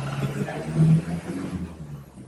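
Street traffic noise: a motor vehicle's engine running with a low hum that swells about a second in and then fades away.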